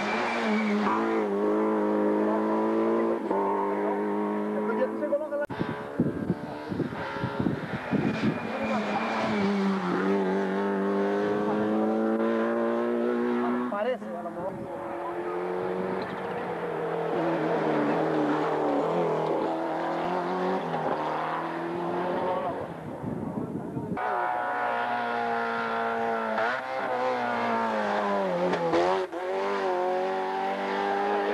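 Rally cars driven hard through bends one after another, engines revving, pitch climbing and dropping through the gear changes. Near a third of the way in, around the middle and about four-fifths of the way through, the sound changes abruptly between cars.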